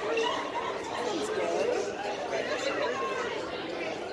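Indistinct talk and background chatter of many voices in a noisy restaurant dining room.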